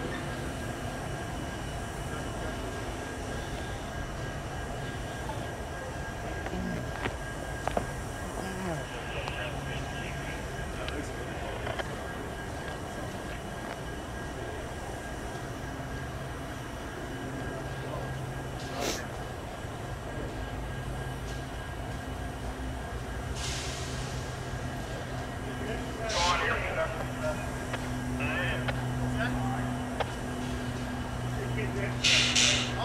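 Idling EMD diesel-electric freight locomotives holding a steady low drone. A few sharp clicks come around a quarter of the way in and again past the middle, and a short hiss of air near three-quarters through.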